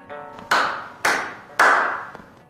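A few last plucked notes of a string instrument, then three sharp hand claps about half a second apart.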